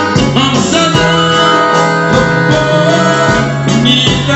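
Live band music with a singer's voice over held instrumental notes, playing steadily.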